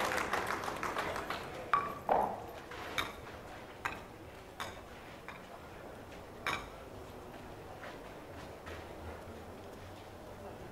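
Wooden bolo palma skittles and balls knocking together on the sand as the fallen pins are gathered and set back up: about seven separate sharp clacks spread over the first seven seconds, with the murmur of the crowd dying away in the first second.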